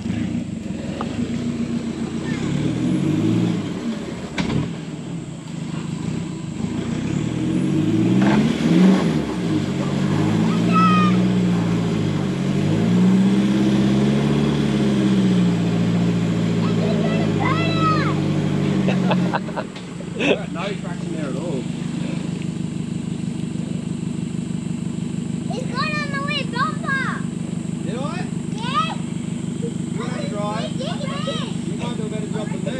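Toyota Hilux engine revving up and down under load as the ute strains in a deep mud rut, its pitch rising and falling several times. About twenty seconds in it drops back to a steady idle.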